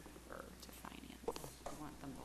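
Faint, indistinct voices in the room, with a few small handling clicks over a steady low electrical hum.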